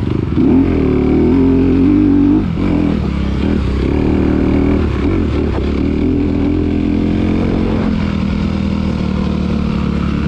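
Motocross bike's engine pulling hard under throttle on a dirt track, its pitch climbing and falling as the rider works the throttle and gears. The engine drops off sharply about two and a half seconds in and again near five seconds, then runs steadier.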